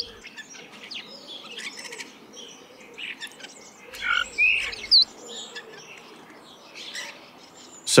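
Birds chirping and whistling in short, scattered calls, with a sharp slurred whistle near the start and another about five seconds in.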